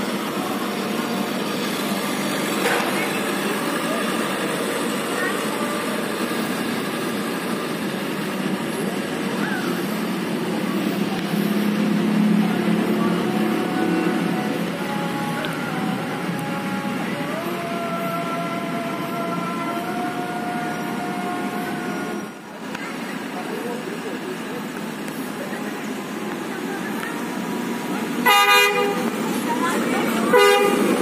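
Railway track-recording car (KUJR) running its engine as it moves slowly past. Near the end its horn gives one short blast.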